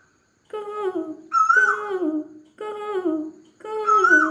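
A woman humming a wordless melody in four short phrases, each falling in pitch, starting after about half a second of silence.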